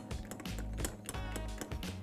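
Ice cubes clinking against a glass as a bar spoon stirs a cocktail: a quick, irregular run of light clicks, heard over background music.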